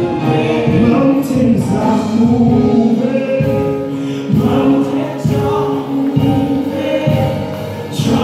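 Live gospel praise-and-worship music: voices singing together in long held notes over keyboard accompaniment.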